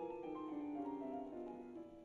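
Piano playing a passage of chords and changing notes in a 20th-century piano concerto.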